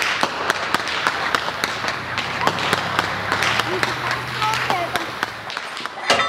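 Several hemp-rope whips cracking over and over, with sharp cracks coming irregularly several times a second over the voices of a crowd.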